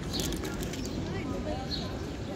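Faint, indistinct voices over steady background noise.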